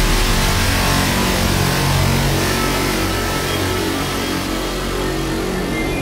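Dark electronic music from a techno/industrial DJ mix in a beatless passage: a dense, rushing noise wash over a low drone, with a few steady high tones coming in near the end.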